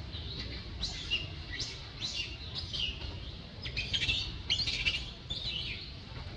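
A series of short, high-pitched chirping animal calls, each falling in pitch, repeating every half second or so and bunching together about four seconds in, over a steady low background rumble.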